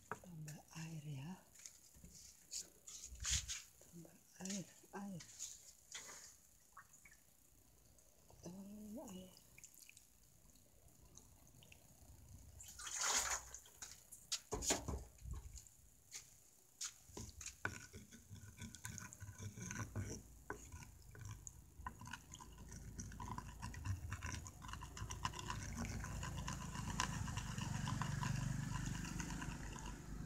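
Knocks and clatter of cookware being handled, then water running and sloshing into a wok of chopped carrots and vegetables, building up steadily over the last ten seconds or so.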